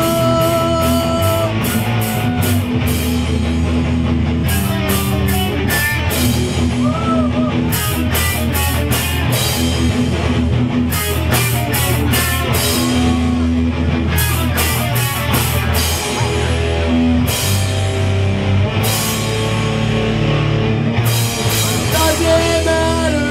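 A rock band playing live and loud: electric guitars and bass over a drum kit, with steady, regular drum and cymbal hits.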